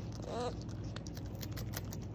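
Baby beaver chewing a raw sweet potato slice: a rapid run of crisp crunching clicks from its teeth. Near the start the kit gives one short, rising whine.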